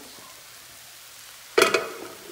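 Pork and vegetables sizzling quietly in a frying pan as steamed rice is tipped in, then a short, loud clatter against the pan about a second and a half in.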